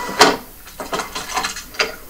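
A few sharp clicks and knocks, the loudest just after the start and another near the end, played back through a TV speaker.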